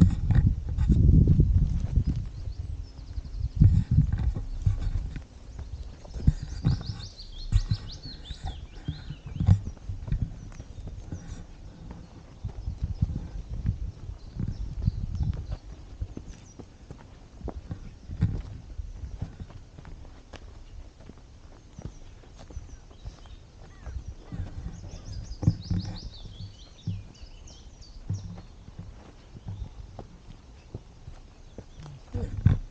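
Footsteps on a dry dirt woodland path, irregular steps and scuffs, with a heavy low rumble in the first few seconds. A songbird sings a descending trill twice, about a quarter of the way in and again near the end.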